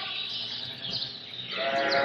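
Lambs bleating in a lambing pen. The first part is quieter, and a louder bleat starts near the end.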